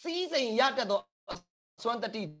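Speech only: a man preaching in Burmese, with a short click in a pause about a second in.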